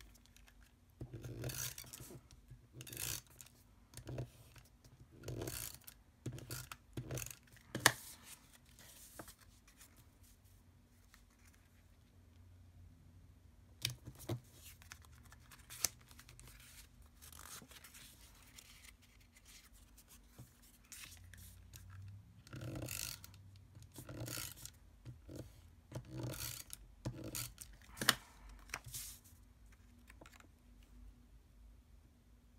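Adhesive tape runner drawn across cardstock in short rasping strokes, with sheets of card being handled and pressed down. The strokes come in two runs, with a quieter stretch of a few clicks between them. Two sharp taps stand out, about eight seconds in and near the end.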